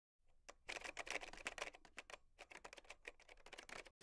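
Faint, rapid, irregular clicking, a quick run of small ticks.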